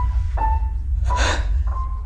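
Piano notes played one at a time, slowly, high in the treble: about four separate notes, each ringing out, with the pitch shifting slightly from note to note, over a steady low rumbling drone. A short breathy hiss cuts in a little over a second in.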